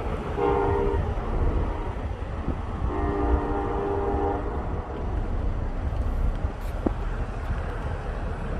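Diesel freight locomotive's multi-note air horn sounding a short blast and then a longer one, at a grade crossing, over a steady low rumble.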